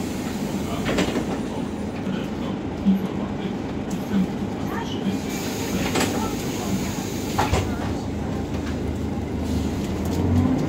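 Cabin noise of a Volvo B10BLE low-entry city bus under way: a steady drone from the engine and ZF automatic gearbox, with a few sharp knocks and rattles from the body.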